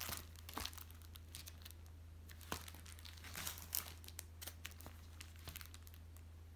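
Plastic clear file folders being handled and flipped, giving irregular crinkling and crackling with sharper clicks near the start and around the middle. A steady low hum runs underneath.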